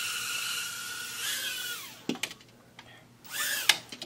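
Micro quadcopter drone's tiny electric motors and propellers giving a steady high-pitched whine with airy hiss, then winding down about two seconds in. A few light clicks follow right after.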